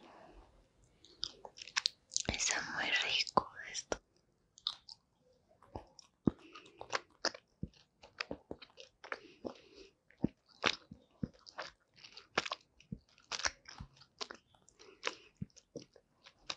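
Close-miked chewing of a sugar-coated gummy candy: a loud, dense burst of biting and mouth noise about two to four seconds in, then irregular sticky clicks and smacks as it is chewed.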